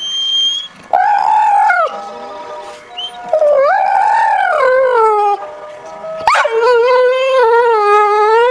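Pit bull-type dog howling in three drawn-out, wavering howls, the last and longest still going at the end. A brief high steady tone sounds at the very start.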